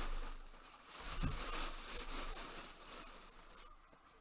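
Clear plastic bag rustling and crinkling as a full-size football helmet is slid out of it, dying away near the end.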